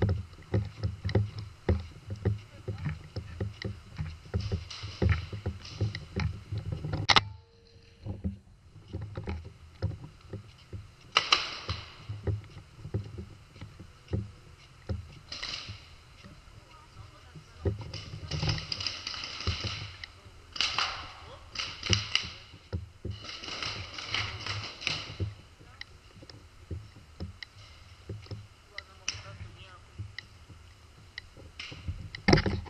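Continual knocking and rattling handling noise from a camera mounted on a paintball gun that is carried on the move, with a sharp single knock about seven seconds in.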